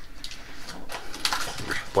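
Rustling and crinkling of a thin wrapping sheet being handled and lifted off a flashlight in its presentation box, louder and scratchier from about a second in.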